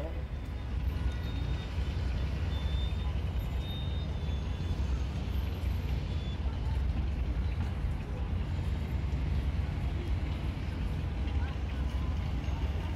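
City street traffic: a steady low rumble of vehicles running.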